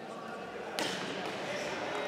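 A single sharp smack in the kickboxing ring a little under a second in, with background voices in a large hall.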